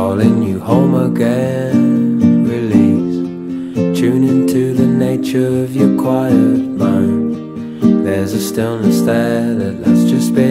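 Indie folk song led by acoustic guitar.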